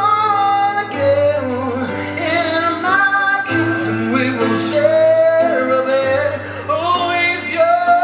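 Live electronic cabaret song: a high male vocal sung in long, sliding notes over keyboard chords and a low bass note that changes every two to three seconds.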